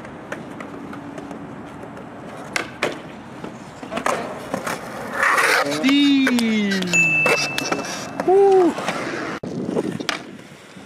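Skateboard wheels rolling on smooth concrete, with a couple of sharp clacks of the board a few seconds in. Later, a person's wordless voice close to the microphone slides down in pitch, followed by a short vocal call.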